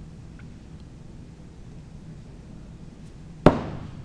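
A throwing axe striking a wooden board target with one sharp, loud thunk about three and a half seconds in, ringing briefly as it fades.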